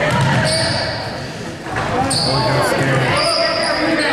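Basketball game sounds in a large gym: a basketball dribbled on the hardwood floor, sneakers squeaking briefly several times, and spectators talking and calling out, all echoing in the hall.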